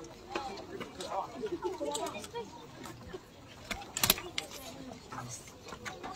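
Indistinct voices of a few people talking quietly, with a sharp knock or click about four seconds in.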